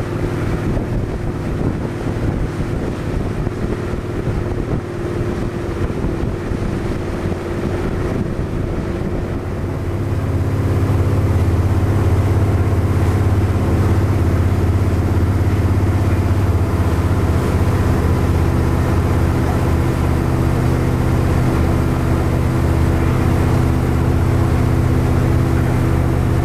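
Motorboat engine running with a steady hum, with wind buffeting the microphone. About ten seconds in the engine hum becomes louder and steadier and the wind noise drops away, heard from inside the boat's cabin.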